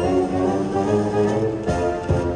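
An American Original slot machine playing its bonus-round music, a bright melodic tune of held notes, while the reels spin through its free games.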